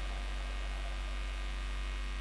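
Low, steady electrical mains hum from the sound system, with a faint hiss under it.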